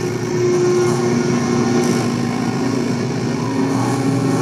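Live metallic-hardcore band playing loud, heavily distorted electric guitars and bass in a droning, sustained passage with no vocals. One held note gives way to a lower one about a second in.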